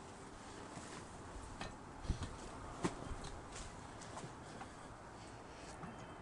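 A few faint, scattered clicks and knocks of an outboard motor's gear shift control being handled and moved toward neutral.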